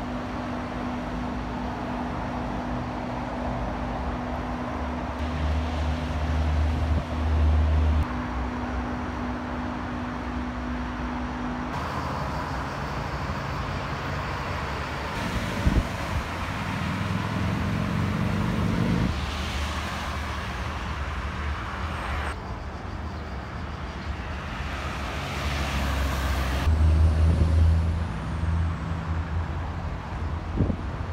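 Road traffic: vehicle engines running and passing, with a steady engine hum for the first part and a few louder vehicles swelling past. A single short knock is heard about halfway through.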